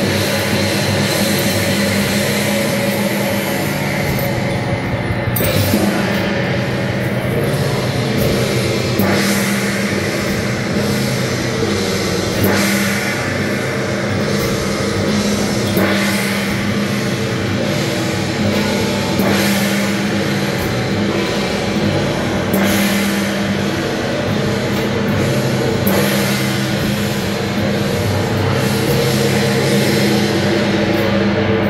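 Loud music with drums and crashing cymbals, going in repeating phrases that change every few seconds.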